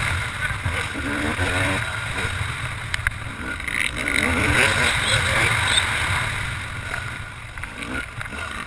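Yamaha YZ250 two-stroke motocross engine revving up and down under load as the bike is ridden, heard from a helmet camera with wind rushing over the microphone.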